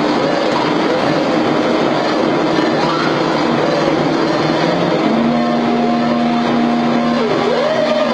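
Experimental electronic noise music played live: a dense, loud wash of noise with wavering, sliding tones through it. About five seconds in, two steady held tones, one low and one higher, come in for about two seconds, and swooping pitch glides follow near the end.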